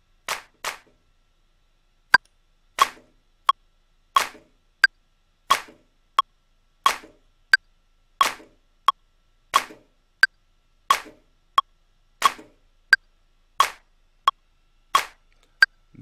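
A software metronome clicking at a steady tempo, about one and a half beats a second. Short drum-sample hits fall between the clicks, played from a MIDI keyboard through a drum-machine plugin as a loop is recorded.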